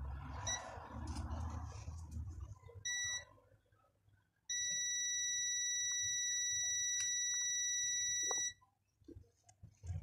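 Digital multimeter's continuity buzzer: a short beep about three seconds in, then one steady high beep of about four seconds while the meter reads about 9 ohms, signalling a closed connection. A low hum with faint handling noise comes before the beeps.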